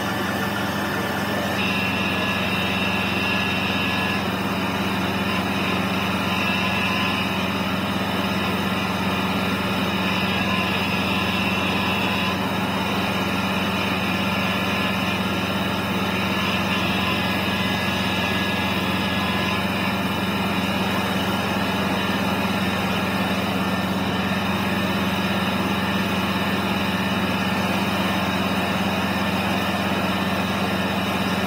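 Fire truck engine running at a steady pitch, a constant low drone with no change in speed.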